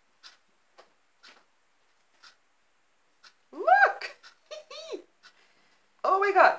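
Faint scattered ticks of damp dyed paper being handled, then, about three and a half seconds in, a woman's two drawn-out 'oohs' of delight, each rising and falling steeply in pitch.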